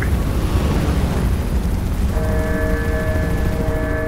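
Loud, deep rumble of film sound effects for a wildfire with aircraft overhead, joined about two seconds in by a held musical chord.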